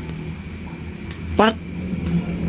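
A man's voice says a single short "pat" about one and a half seconds in, over a steady low background hum.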